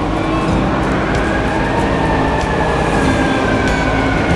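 City street noise: a steady rumble of traffic with a long mechanical whine that rises about a second in, then slowly falls away.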